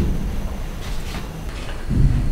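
Low rumbling with two dull thumps, one at the start and one near the end about two seconds later: a noise heard from up above in an empty building.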